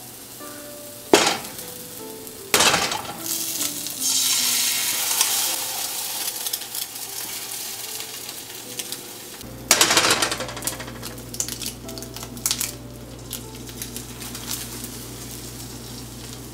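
Eggs cracked and dropped one at a time into a hot oiled non-stick pan. There are sharp cracks about a second in, at about two and a half seconds and near ten seconds, each followed by a burst of sizzling that settles into a steady fry.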